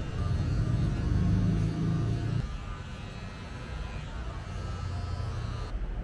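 Electric hair clippers buzzing close to the ear during a trim, a steady low hum that drops away about two and a half seconds in and comes back weaker near the end.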